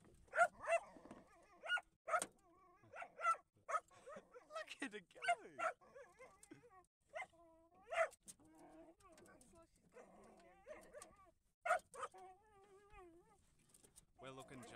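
Small black-and-tan dog barking in sharp, excited yaps again and again, with high whines between the barks, worked up by a hooked fish being reeled in beside the boat.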